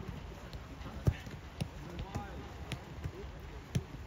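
Football being kicked and headed back and forth between players keeping it in the air: a string of thuds about every half second, the loudest about a second in, with faint voices behind.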